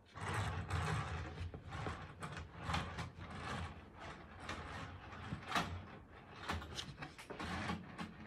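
Hands handling Hornby model railway carriages and a locomotive on the track close to the microphone: irregular plastic clicks, knocks and rustling, with no motor running.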